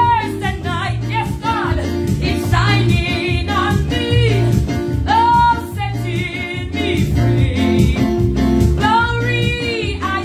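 A woman singing a gospel song with full voice over electronic keyboard accompaniment, with sustained bass chords and a steady beat.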